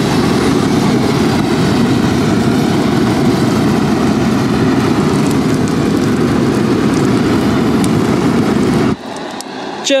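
Flamethrower firing one continuous blast of flame over a toy truck, a steady rushing noise that cuts off suddenly about nine seconds in.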